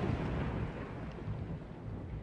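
Logo-intro sound effect: the rumble of a thunderclap with rain noise, dying away steadily.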